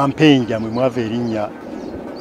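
A man's voice speaking in a low pitch for about a second and a half, then a pause.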